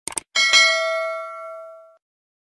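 A quick double mouse click, then a notification-bell sound effect rings and fades away over about a second and a half.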